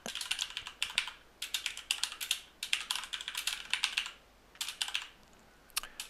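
Typing on a computer keyboard: rapid keystroke clicks in quick runs, a brief pause about four seconds in, then a few more keystrokes near the end.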